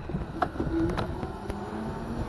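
Razor RSF650 electric motorbike riding along, with a faint, slightly rising electric motor whine over low wind and tyre rumble. Two sharp clicks come about half a second and a second in.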